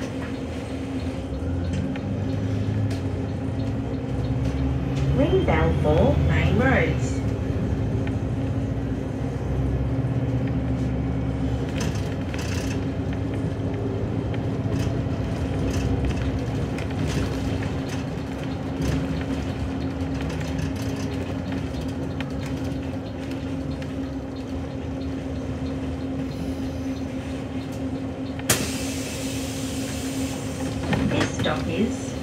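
Inside a city bus on the move: the bus's drivetrain and road noise rumble with a steady hum, and a rising whine comes in about five seconds in. Near the end a loud burst of compressed-air hiss from the bus's pneumatics sounds as it halts at a stop.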